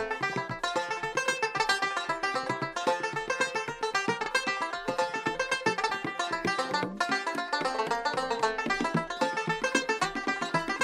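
Banjo playing a fast instrumental tune of rapidly picked notes, with bent notes among them.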